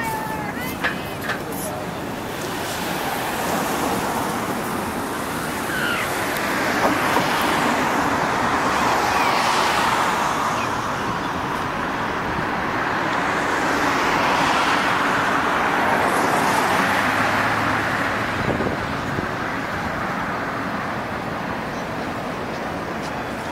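Road traffic: cars passing on a nearby road, their tyre and engine noise swelling and fading in several long waves.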